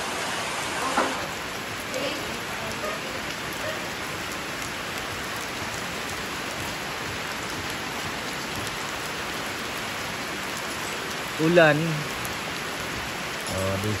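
Steady rain falling, an even hiss with no letup. A person's voice cuts in briefly a couple of seconds before the end.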